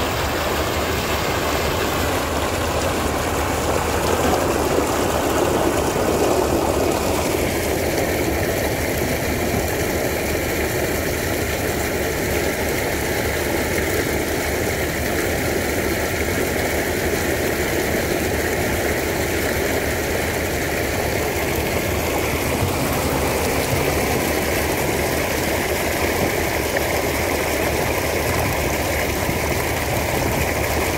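Sand-and-water slurry gushing steadily from the outlet of a sand-pumping discharge pipe, with a low, steady engine-like hum underneath.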